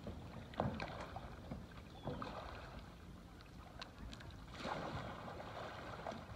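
Faint, soft splashes of a double-bladed kayak paddle stroking through calm river water, a few strokes spaced a couple of seconds apart.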